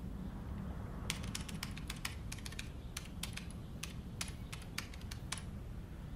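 Rapid typing on a laptop keyboard: an irregular run of about twenty quick keystrokes that starts about a second in and stops shortly before the end, over a low steady room hum.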